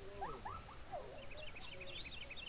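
Faint high squeals sliding up and down in the first second, then a quick run of short high chirps, about seven a second, in the second half.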